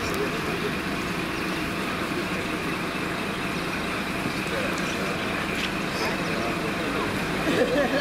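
Parked coach bus engine idling with a steady hum, with indistinct voices around it.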